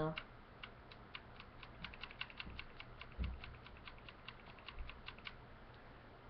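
Light plastic clicking of a Lego-brick toy gun's rubber-band trigger being pulled again and again: many quick, irregular clicks, several a second, with a soft low bump about three seconds in.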